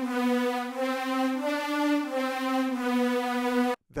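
A synth strings sound playing a soloed harmony line from a MIDI file. It holds long, sustained notes that step up a little in the middle and back down, then cuts off abruptly just before the end when playback stops.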